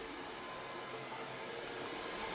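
Xiaomi TruClean W10 Ultra wet-dry stick vacuum running steadily in turbo mode: an even hiss with a faint whine.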